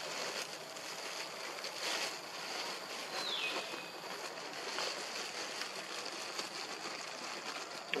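Outdoor forest ambience: a steady hiss with a faint, constant high tone, and one short falling whistle about three seconds in.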